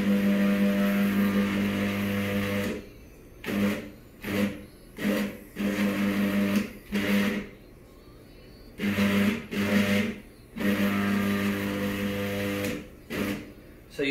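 Stepper motors of a DIY motion-control camera slider rig running backwards, giving a steady pitched hum: one long run at the start, then a series of short stop-start bursts, a pause in the middle, and another long run with a last short burst near the end.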